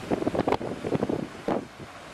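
Wind buffeting the microphone on the open deck of a moving ferry: an uneven rushing that surges and drops.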